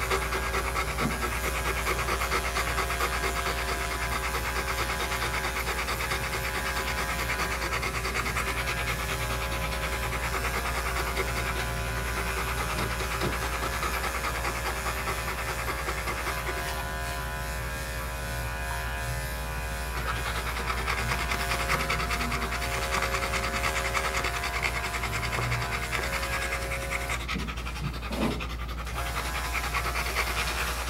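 Great Pyrenees panting steadily while electric dog clippers run continuously through its coat, shaving off matted fur.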